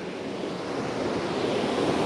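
Waterfall rushing: a steady, even roar of falling water.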